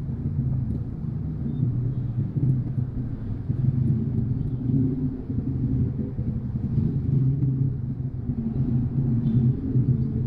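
Low, steady rumble of a car's engine and road noise heard from inside the cabin as the car creeps forward in slow traffic.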